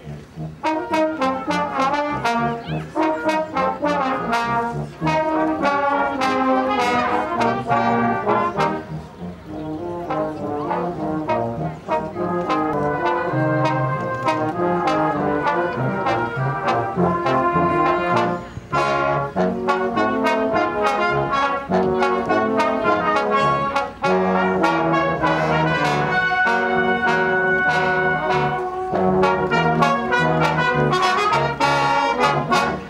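A brass band (cornets, trombones and other brass) playing a piece together, with a steady run of changing notes and brief breaks in the phrasing.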